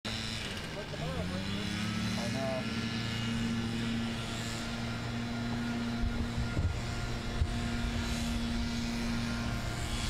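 A steady motor-engine hum whose pitch rises over the first couple of seconds and then holds level, heard over outdoor ambience.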